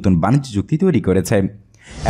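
A narrator's voice speaking Bengali, with a short pause near the end.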